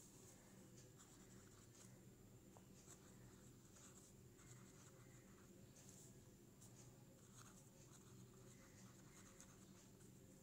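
Faint scratching of a pen nib on lined paper as cursive words are written, in short irregular strokes, over a low steady hum.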